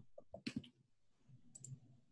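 A few faint computer clicks, close together in the first half second and again briefly near the end, over near silence, as an answer is entered into an online form.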